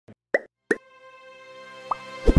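Animated logo intro music: a few short, rising plopping pops, two loud ones close together early on and a softer one near the end, over a sustained musical tone that slowly swells.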